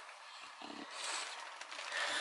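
Faint rustling and shuffling of a bulldog moving about on the blankets of her dog bed, with one short low sound from her about two-thirds of a second in.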